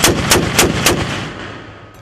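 XM813 30mm automatic cannon on a Bradley firing the end of a short burst: four rounds about a quarter of a second apart, then the report echoes and fades away.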